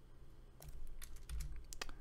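Computer keyboard typing: a quick run of key clicks that starts about half a second in.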